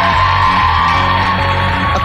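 Television show background music with a steady low bass line and a held high note, under a studio audience cheering.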